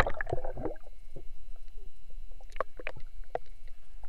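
Underwater sound heard through a submerged action camera: bubbles gurgling away just after going under, then scattered sharp clicks and crackles in the water, over a faint steady whine.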